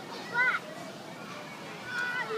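Children's voices from a park, with one short, high-pitched shout about half a second in, over a steady outdoor background.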